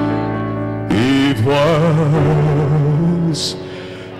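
A man singing live into a microphone, holding long notes with vibrato from about a second in over sustained accompaniment chords; the sound fades toward the end.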